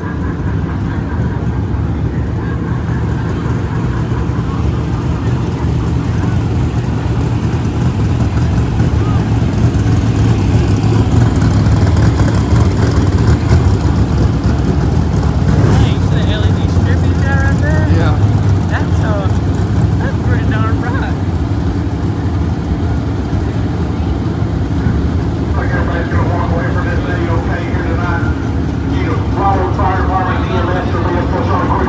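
A pack of dirt-track modified race cars with V8 engines running at low speed in a steady low drone that grows louder toward the middle as the cars come by.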